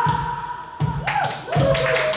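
Live electronic music: spaced low drum-machine hits under synthesizer tones, with a steady high note early on and tones that bend downward in pitch about a second in.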